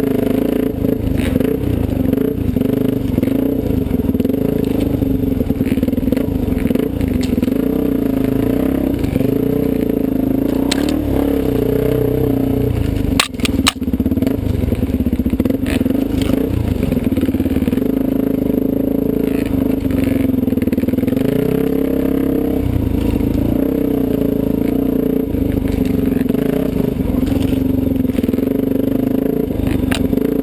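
Dirt bike engine running on a trail ride, its pitch rising and falling with the throttle, heard from a camera mounted on the moving bike. About halfway through come a couple of sharp knocks with a brief drop in sound.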